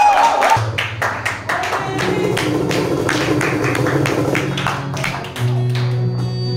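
Acoustic guitar playing sustained low notes under a run of sharp percussive strikes, a few per second.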